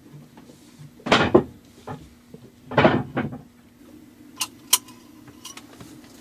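A metal engine oil dipstick being wiped with a rag and handled: two rustling, scraping strokes, then two light sharp clicks. A faint low steady hum comes in halfway through.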